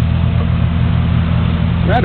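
Mini excavator's engine running steadily while it digs, a steady low hum.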